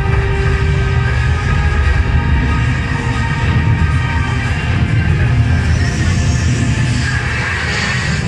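A film soundtrack played loud over a room's loudspeakers: music over a deep, steady rumble of explosion and spacecraft sound effects.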